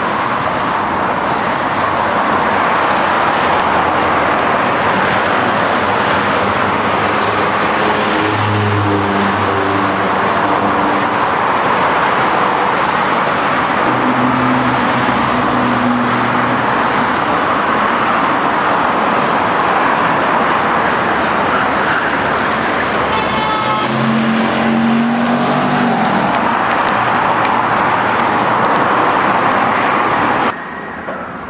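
Loud, steady noise of heavy city road traffic, with low engine tones from passing vehicles standing out three times.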